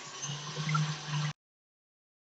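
KitchenAid Classic Plus stand mixer running on low, its wire whisk beating heavy cream in a steel bowl: a steady motor hum with a whirring hiss over it. The sound cuts off abruptly after about a second and a half into dead silence while the mixer keeps turning.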